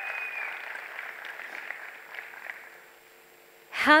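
Audience applause in a hall, fading away over about three seconds.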